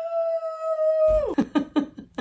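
A woman's voice holding one long, high sung note, which drops away about a second in into a few short, falling laughs.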